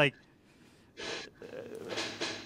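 A man's short breathy exhale of laughter about a second in, after a brief lull, followed by softer breathing.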